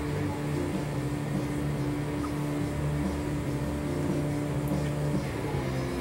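A steady low hum with a few held low tones, at an even level throughout.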